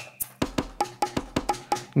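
Percussion samples played from a DIY arcade-button MIDI controller, tapped out as a quick run of short pitched hits, about five or six a second.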